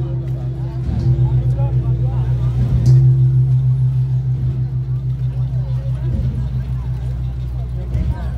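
Large hanging gong struck with a mallet about a second in and again about three seconds in, each stroke ringing on as a loud, slowly pulsing low hum that fades gradually.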